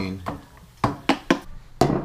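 A few sharp clicks and knocks of handling, four of them over about a second, from a stirring spoon and plastic cup and from the camera being picked up.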